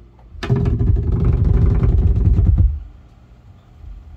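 Live bass, drums and guitar trio: a loud, bass-heavy surge about half a second in, lasting about two seconds, then dropping back to a quiet passage.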